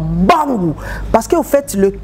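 Speech only: a person talking, with nothing else standing out.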